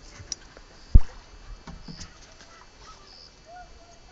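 Faint outdoor background with a few short, faint chirps and one loud, low thump about a second in.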